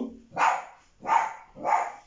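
Dry-erase marker squeaking on a whiteboard in three short strokes as three digits are written.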